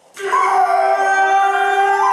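A person's long, loud vocal cry, held at one steady pitch for about two seconds: a stage scream from one of the actors.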